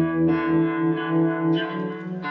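Electric guitar played live through effects, holding long sustained notes; the note changes about one and a half seconds in.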